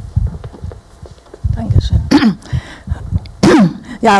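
A handheld microphone being handled and passed along, giving low bumps and thuds, then a person clearing the throat into it twice, about two seconds in and near the end, each with a falling pitch.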